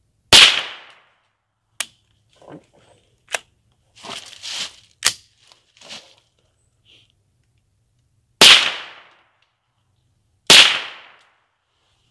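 .22 rifle firing three shots, one just after the start and two near the end about two seconds apart, each loud bang trailing off with echo. Fainter sharp clicks and soft handling noise come in between.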